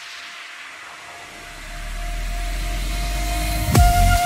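Breakdown in a vinahouse dance mix: a hissing noise sweep with the bass dropped out, the low bass and a held synth tone swelling back in, then the kick drum crashes back in just before the end.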